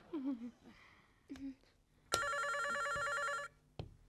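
Telephone bell ringing: one trilling ring about two seconds in, lasting over a second.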